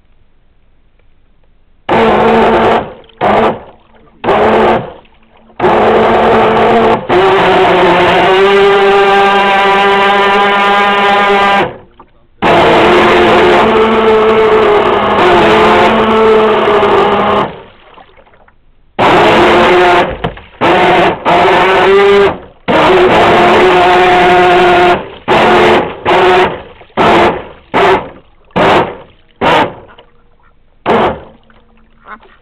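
RC boat's motor running in throttle bursts with a steady whine that starts and stops abruptly. It runs in long stretches of several seconds, its pitch rising slightly in one of them, then gives short quick blips about every half second near the end.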